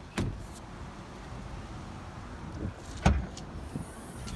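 A Fiat 500's doors and hatch being handled: a light click just after the start, faint handling noise, then one solid thump about three seconds in.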